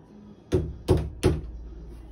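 Wooden door knocking three times in quick succession, about a third of a second apart, against a PVC pipe laid on the floor as a doorstop, which stops it from swinging further.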